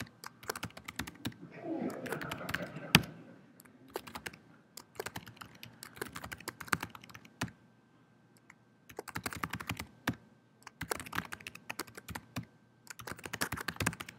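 Typing on a computer keyboard: quick runs of key clicks, with one louder key strike about three seconds in and a short pause a little past halfway.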